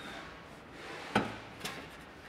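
A snorkel body knocking against a car's front guard as it is offered up to the hole for a test fit: one sharp knock about a second in and a fainter one shortly after.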